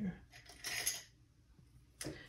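A brief light clatter of small objects being handled, a little after half a second in, followed by quiet room tone.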